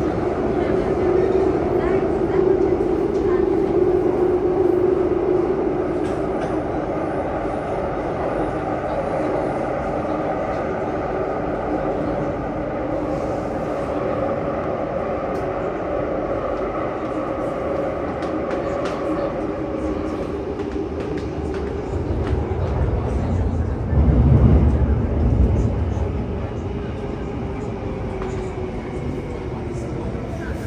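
A Downtown Line MRT train running, heard from inside the carriage: the steady rumble and hum of the train in motion, with a louder low rumble for a few seconds about three-quarters of the way through.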